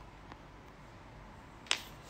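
Quiet room with a faint tick, then a single short, sharp click near the end.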